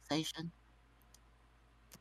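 A voice trails off, then near silence broken by a few faint, short clicks: two close together about a second in and one just before the end.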